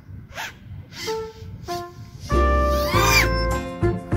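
Background music: sparse short pitched notes at first, then a much louder passage with deep bass and held chords comes in a little past two seconds, with a rising sweep soon after.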